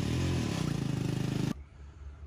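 A motor vehicle engine running loud close by, its pitch dipping and then rising as it is revved, cut off suddenly about one and a half seconds in; a lower, steady engine drone remains.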